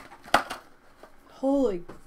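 A single sharp tap about a third of a second in, then a brief wordless vocal sound near the end that falls in pitch.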